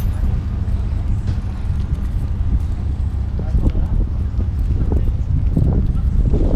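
Steady low drone of a passenger ferry's engine, with wind noise on the microphone.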